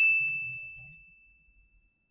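A single bright ding sound effect, struck once and ringing out until it fades away about a second and a half in. It marks the answer appearing on screen.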